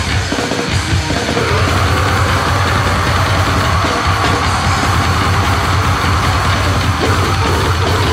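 Brutal death metal band recording playing: a loud, dense, unbroken wall of heavy metal with drums.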